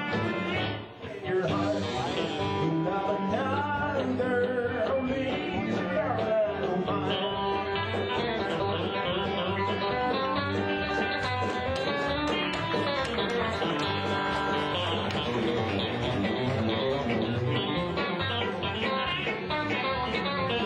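A live country-bluegrass band playing an instrumental passage, led by a solid-body electric guitar picking the melody.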